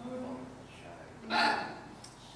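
Voices: a voice trails off at the start, then a short, loud vocal exclamation comes about a second and a half in.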